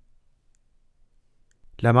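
A pause in the audiobook narration: near silence with a couple of faint clicks, then the narrator's voice resumes speaking in Burmese near the end.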